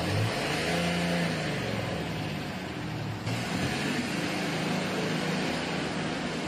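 Road vehicle engine running with traffic and road noise, its pitch shifting slightly. The sound changes abruptly about three seconds in.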